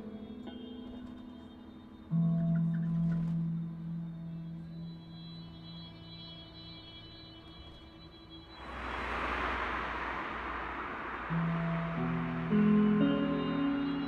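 Ambient film-score music of long held notes, with a low note swelling in about two seconds in. About two-thirds of the way through, a rushing noise sweeps in suddenly and fades over a few seconds as new sustained notes enter.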